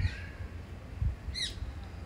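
A small bird chirps once, a brief high call with quick downward sweeps about one and a half seconds in, over a low background rumble.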